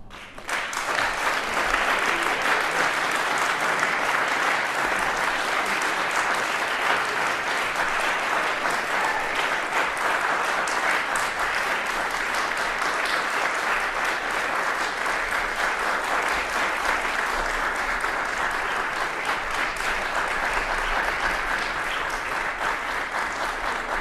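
Audience applauding, starting about half a second in and continuing steadily.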